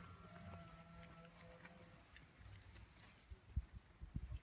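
Quiet outdoor ambience with short high chirps repeating every second or so, typical of a small bird, and a few soft low knocks in the second half.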